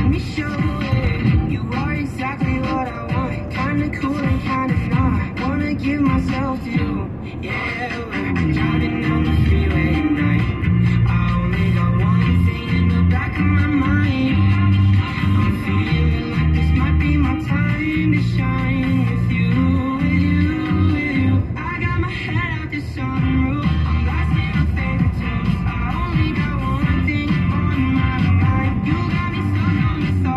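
A song playing on the car radio, heard inside the car's cabin; a heavier bass part comes in about eight seconds in.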